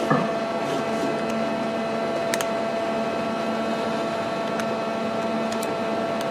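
Steady hum with a constant whine from an idle CNC lathe, spindle stopped, and a few sharp clicks of keys pressed on its Fanuc control panel.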